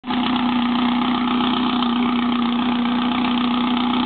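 Air-cooled flat-four engine of a vintage VW Beetle idling steadily at its tailpipe, with a steady hum over the exhaust note.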